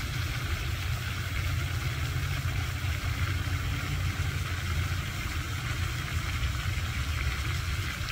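Floating lake fountain running: a steady hiss of spraying and falling water over a continuous low rumble.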